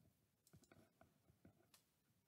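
Near silence: a handful of faint, short computer-mouse clicks.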